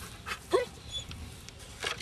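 German Shepherd giving one short whine about half a second in, with a few knocks as it jumps from a ramp down into a wooden slatted crate.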